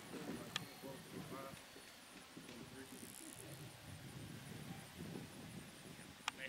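Faint, indistinct voices talking at a distance, with a single sharp click a little over half a second in.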